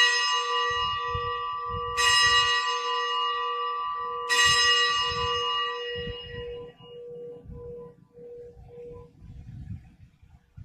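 A bell rung at the elevation of the host during the consecration of the Mass, the sign of the bread's consecration. It is already ringing and is struck twice more, about two seconds apart, and each stroke rings on and slowly dies away.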